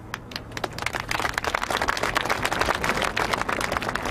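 Crowd applauding: a few scattered claps, then dense steady clapping from about a second in.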